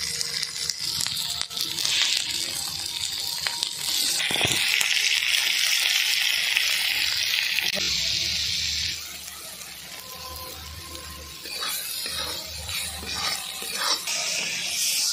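Spice paste frying in oil in an iron kadai, sizzling steadily as salt and red chilli powder go in and a spatula stirs. The sizzle is loudest in the middle and dies down about nine seconds in.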